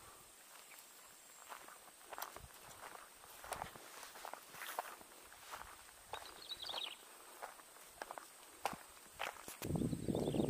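Footsteps of a person walking along a dirt path and grassy riverbank, soft irregular steps and scuffs. A much louder rustling noise starts just before the end.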